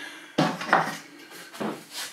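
A model harbour wall section being handled and set against the wooden baseboard: a few light knocks and clatters, the sharpest about half a second in.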